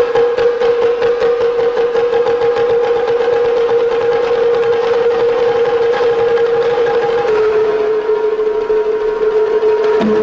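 Chinese percussion-ensemble music: a fast, continuous drum roll on a row of tuned drums under one long held wind-instrument note, which steps slightly lower about seven seconds in.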